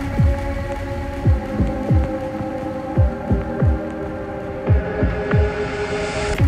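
Dark, bass-heavy dubstep: deep kick drums that drop in pitch hit in a broken, syncopated pattern under held synth pad tones. A rising noise sweep builds near the end.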